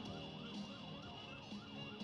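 Faint siren yelping, its pitch rising and falling quickly about four times a second, the fast wail of a police car.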